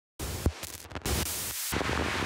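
Static noise, starting abruptly and cutting in and out with short dropouts, with a sharp click about half a second in: a glitchy noise intro ahead of the music.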